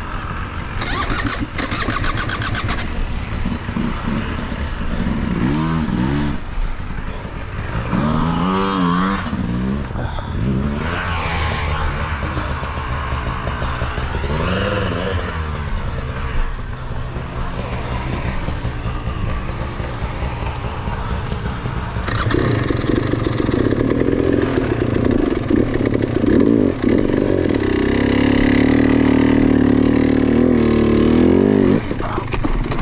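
Dirt bike engines running at low revs, with the engine note swelling and falling briefly a few times. About two-thirds of the way through, a louder, steady engine note takes over.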